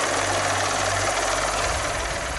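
Helicopter in flight: a loud, steady wash of rotor and engine noise with a low hum underneath.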